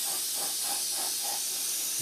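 Steady hiss of weathering wash being sprayed liberally over a plastic model aircraft.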